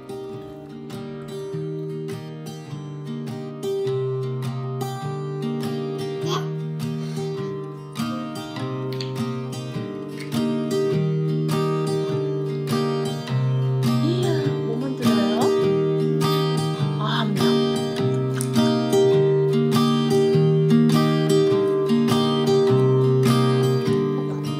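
Background music with plucked acoustic guitar in a steady rhythm, growing gradually louder.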